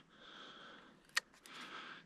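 A person breathing close to the microphone: two soft breaths, with a single sharp click between them about a second in.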